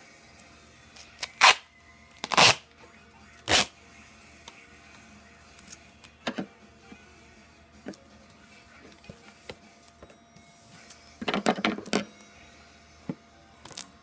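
Duct tape pulled off the roll in three short, loud rips in the first few seconds, then a longer, broken stretch of ripping near the end.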